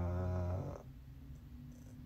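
A man's drawn-out, flat 'uhhh' of hesitation, held for most of the first second, then quiet room tone.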